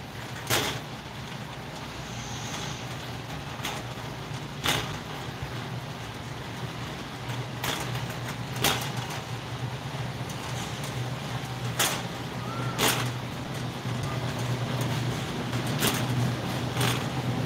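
Shopping cart rolling across a concrete store floor, giving sharp clicks, mostly in pairs about a second apart, every few seconds, over a steady low hum.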